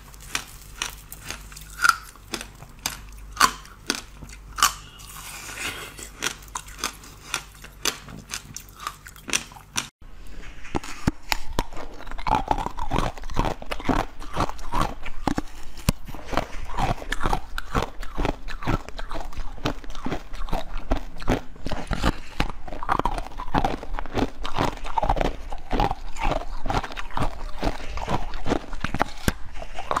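Ice frozen with basil seeds bitten and crunched close to the microphone, in sharp, separate bites. About ten seconds in there is a cut, and a blue keyboard-shaped ice block is bitten and chewed in a dense, steady run of crackling crunches.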